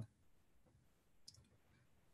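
Near silence, with one faint short click a little past the middle.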